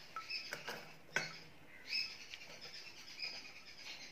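Chopped pineapple pieces tipped from a bowl into a stainless steel pot: faint soft clicks as they land, with one sharp clink about a second in. Faint short high chirps come and go after it.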